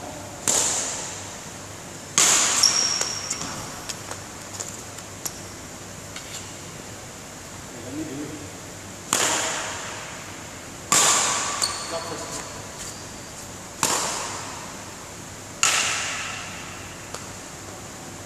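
Badminton rackets striking shuttlecocks in a large hall: about six sharp, loud hits spaced a couple of seconds apart, each ringing on with a long echo, with a few fainter clicks between them.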